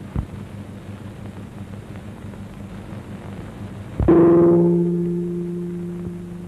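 A single gong stroke about four seconds in, sharp at the strike and then ringing on with a steady low tone that slowly fades, as a dramatic sting in the film's score. A soft thump comes at the very start, over a steady low hum.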